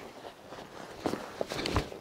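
Faint footfalls of a walking pony and a person on a sand floor, with a few soft dull thuds in the second half.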